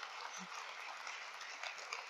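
Faint, scattered audience clapping in a large hall: many small irregular claps over a low background haze.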